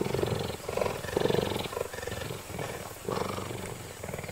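Cheetah purring as it is stroked: a throbbing purr in long stretches, one for each breath in and out, four in all.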